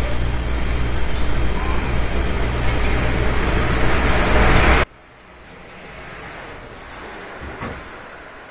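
Loud, rough noise with a low hum underneath, the camera's own sound of the struggle in the shop. It cuts off abruptly about five seconds in, leaving only a faint hiss.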